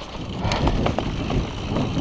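Mountain bike rolling fast over bumpy, leaf-covered dirt singletrack: low tyre rumble with scattered rattling knocks from the bike over roots and bumps, and wind on the microphone.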